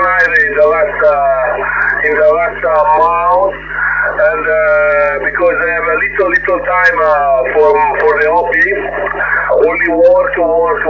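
Speech received on an 11-metre transceiver in upper sideband: a voice coming from the radio's speaker, narrow and thin in tone, over a steady low hum.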